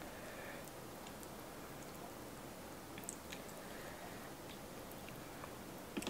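Faint clicks and soft crackles of a cooked, sauce-coated shrimp's shell being peeled by hand, with a few sharper clicks about three seconds in, over a steady low hiss.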